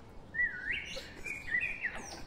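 A single clear whistled phrase, wavering up and down in pitch for about a second and a half, over faint forest background.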